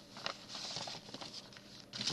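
Soft paper rustling with a few light taps as postcards and envelopes are handled.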